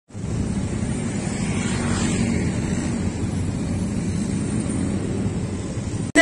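Steady outdoor noise: an even rumble and hiss with no distinct events.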